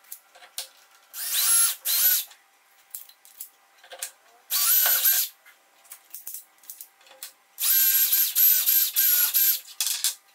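Cordless drill running in three short bursts, the last a string of quick pulses, drilling small holes into the tabletop through the guide holes of a steel rule.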